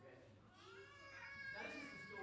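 Faint, high-pitched wavering cries, starting about half a second in and held through the second half.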